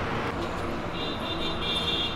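Steady background rumble of road traffic, with faint high tones coming and going from about a second in.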